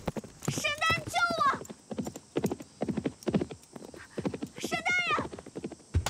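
Galloping hoofbeats of a bolting horse, an even run of about two to three beats a second, with two high cries, one about a second in and one near the end.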